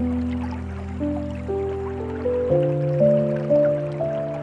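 Slow, gentle piano music, a new note about every half second, with a lower bass note coming in about two and a half seconds in, over a faint background of dripping water.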